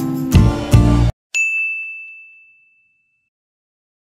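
Strummed guitar music that cuts off abruptly about a second in, followed by a single bright ding sound effect accompanying the channel logo, ringing and fading over about a second and a half.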